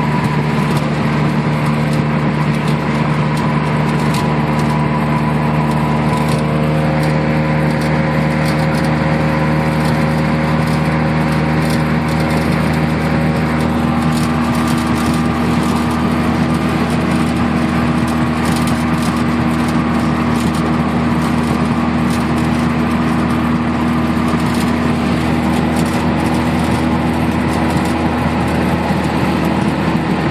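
Straight-piped 1987 Mazda RX-7's naturally aspirated 13B rotary engine with headers, heard from inside the cabin as it cruises at steady revs, around 2,500 rpm, over tyre and road noise. Its drone eases slightly about halfway through.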